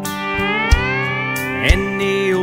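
Country band instrumental passage: a pedal steel guitar plays a long upward slide across several notes over the band, with drum hits keeping the beat.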